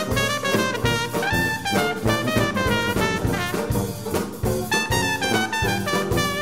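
Live traditional jazz band playing a Charleston: trumpet and trombone lines over banjo, sousaphone and drum kit, with a steady beat.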